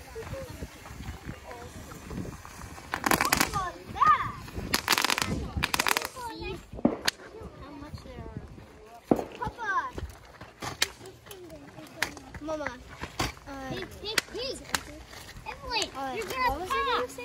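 Consumer fireworks going off a short way off: three short hissing bursts between about three and six seconds in, followed by scattered sharp pops and cracks. Children's voices are heard throughout.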